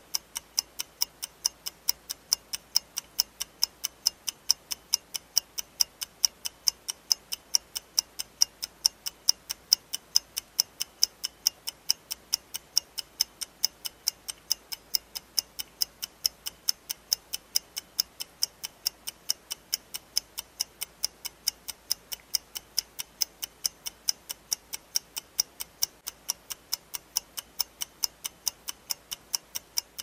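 Clock ticking, a steady tick-tock at about three ticks a second with the ticks alternating louder and softer.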